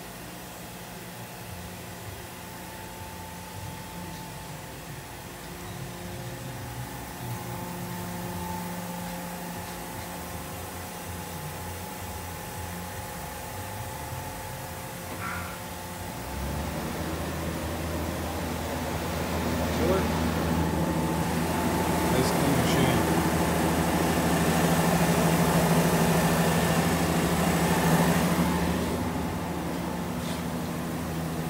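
Steady electrical and mechanical hum of a powered-up Mazak VCN530C-II vertical machining centre. It grows louder a little past halfway, and a fuller, steady rushing joins in near the end.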